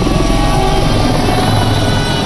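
Helicopter flying low overhead, its rotor beating in a fast, steady chop.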